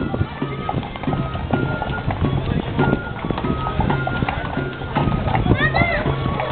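Shod horses' hooves clip-clopping on a paved street, with a crowd talking and short high flute notes from a fabiol. Near the end there are high rising-and-falling calls.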